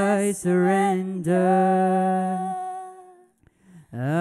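A single voice singing slow, long-held notes into a microphone. The last note fades out about three seconds in, and a short pause follows.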